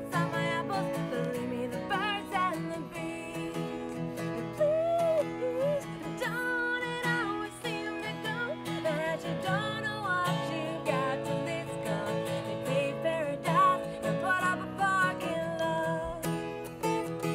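Music: an acoustic guitar strumming chords in a steady folk-rock rhythm, with a gliding melody line running above it.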